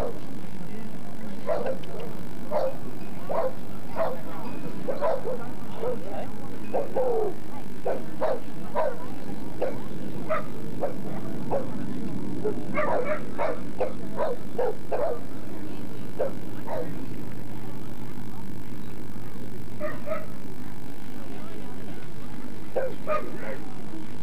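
A dog barking repeatedly in short, sharp barks, about one or two a second, pausing for a few seconds near the end before a few more. A low murmur of crowd chatter runs underneath.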